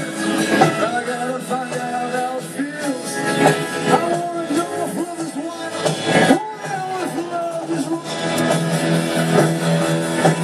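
Live rock band playing over a stage PA, heard from within an open-air crowd, with a sung vocal and guitar.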